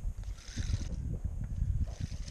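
Spinning reel being cranked while a hooked bass pulls on light line, under a dense, irregular low rumble of rubbing and knocks from the body-mounted camera, with a short hiss about half a second in.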